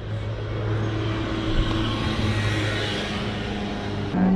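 Road traffic: a motor vehicle's steady low engine hum under a wash of tyre and engine noise that swells and fades through the middle.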